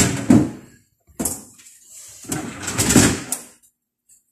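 A refrigerator's plastic drawers and compartments being slid and handled, in two bouts of about a second each, the second coming about two seconds in.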